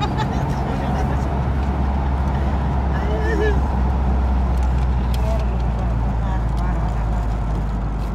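Steady low drone of a car's engine and tyres on the road, heard from inside the moving car's cabin, with brief voices around the middle.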